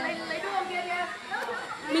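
Several people chatting in the background, their voices overlapping and indistinct, with no other sound standing out.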